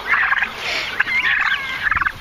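Narragansett turkey poults peeping, many short high peeps overlapping one another.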